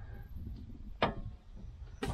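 A single short tap about halfway through, over a low background rumble: a hand knocking against the plywood door panel.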